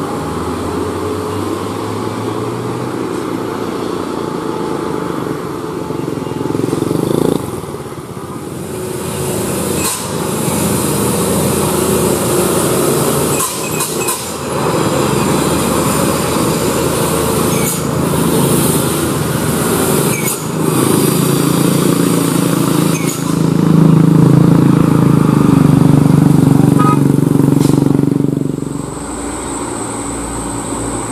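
Engines of heavy vehicles and motorcycles passing on a steep winding mountain road: diesel bus and truck engines with motorcycles among them. The sound changes abruptly a few times, and is loudest near the end, where a diesel engine runs close by.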